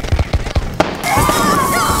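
A crackle of scattered reenactment gunfire pops through the first second. Then, about a second in, many young voices break into sustained yelling.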